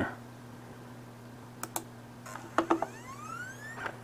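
Clicks from working a laptop: two quick clicks, then a short cluster of clicks a little later. Near the end a rising whine lasting about a second, over a faint steady hum.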